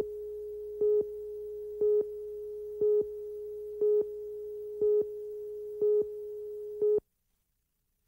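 A steady electronic tone with a louder beep about once a second, seven beeps in all, cutting off suddenly about seven seconds in.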